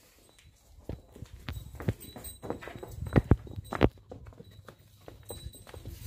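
Cow's hooves knocking on hard, packed ground as it is led along: a run of irregular steps, loudest about three seconds in.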